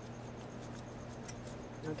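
Faint clicks and scraping of wire spade connectors being worked off the metal terminals of a pool motor's run capacitor, over a steady low hum.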